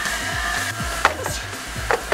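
A Weslo motorized treadmill running under a jogger's footfalls, with two sharp knocks, one about a second in and one near the end. Background music plays underneath.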